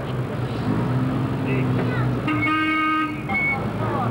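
A vehicle horn gives one toot of about a second, a little past the middle, over the steady running of slow-moving vehicle engines and people's voices.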